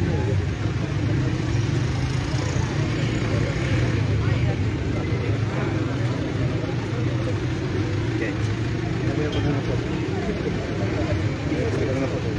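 Outdoor street ambience: a steady low hum of passing traffic and engines with the indistinct voices of a gathered crowd.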